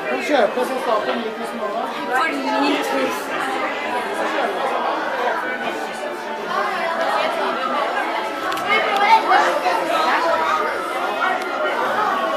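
Indistinct chatter of many voices overlapping in a busy shop, with no single voice standing out.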